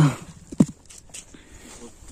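The end of a spoken phrase and one short voiced sound about half a second in, followed by faint, low background noise with a few light ticks.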